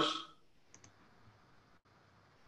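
The end of a man's spoken question, then quiet room tone broken by two faint clicks in quick succession just under a second in.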